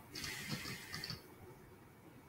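Moorebot Scout robot's small drive motors whirring softly for about a second as it reverses toward its charging dock.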